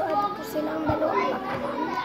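Children's voices, high-pitched chatter and play sounds, with a soft low thump about halfway through.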